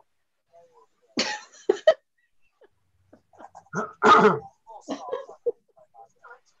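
A short cough about a second in, then a person laughing for a second or two, heard over a video call.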